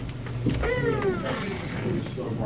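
A door knocks as it is pushed open, followed by a long squeak from its hinges or closer that falls steadily in pitch as the door swings.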